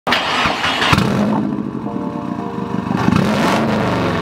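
Turbocharged flat-four engine of a Subaru Impreza WRX running and revving through its exhaust, with a sharp crack about a second in and a rise and fall in engine pitch near the end.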